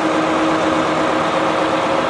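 A vehicle engine idling steadily, an even, unbroken hum.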